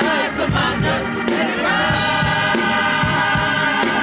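Gospel choir singing with instrumental accompaniment and a steady beat; the voices hold one long chord from about one and a half seconds in until near the end.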